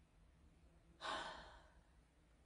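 A person sighing once about a second in: a short breathy exhale that fades out within about half a second.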